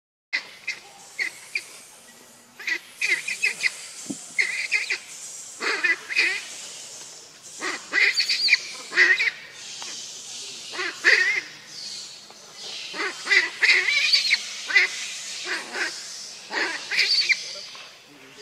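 Macaques calling: a run of short, high-pitched calls in quick, irregular bunches, sometimes several close together.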